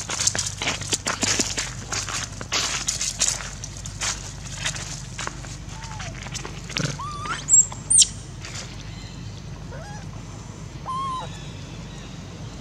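Dry leaves and gritty ground rustling and scraping as an adult long-tailed macaque drags a baby macaque. Partway through comes a couple of short, sharp, high-pitched rising squeals from the baby, and a few faint short calls follow near the end.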